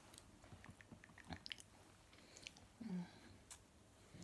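Near silence with faint, scattered small clicks and handling noises, and a brief low hum about three seconds in.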